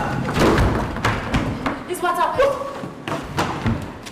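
Repeated thumps and knocks of actors scuffling on a wooden stage floor, with a voice shouting about two seconds in.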